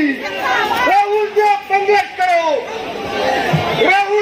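A man shouting slogans over loudspeakers in long, drawn-out calls, each held about a second, with crowd chatter beneath.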